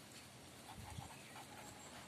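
Near silence, with faint scratching and ticking of a pen writing on paper.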